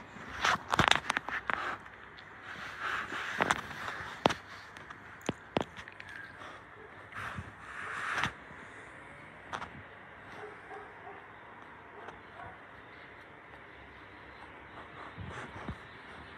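Close-up rustling, scraping and sharp knocks as a dog is stroked and its fur brushes against the phone's microphone, busy through the first eight seconds, then only a few faint ticks.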